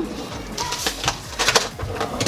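A bottle of Milk Makeup Blur Spray setting spray being shaken, the liquid sloshing in a string of short, irregular strokes.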